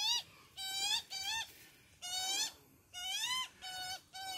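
Young Australian magpie begging for food from its parent: about six short, rising-then-falling calls in quick succession.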